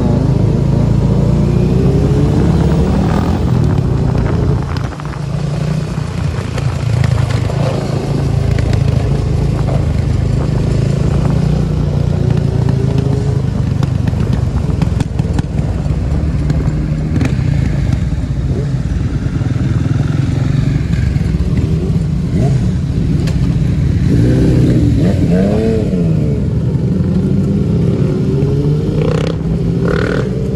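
Motorcycle engines running as a group of motorcycles rides slowly together, the rider's own sport bike close to the microphone. An engine revs up and down about twenty-five seconds in and again near the end.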